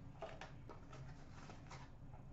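Faint handling noises: a few light ticks and rustles as small card boxes are picked up and set down by hand, over quiet room tone.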